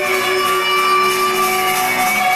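Live rock band playing loud, with electric guitars holding a steady sustained chord over the band.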